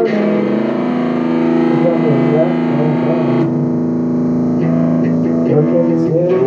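Rock music: a distorted electric guitar holds a chord while a voice sings wavering notes over it. The upper sound thins out about halfway through.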